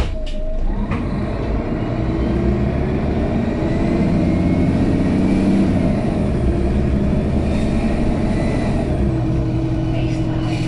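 Mercedes-Benz Citaro O530G articulated bus's OM457hLA six-cylinder diesel pulling hard under acceleration, heard from inside the passenger cabin. The engine note climbs for about five seconds, then drops a little as the Voith automatic gearbox changes up, and it pulls on.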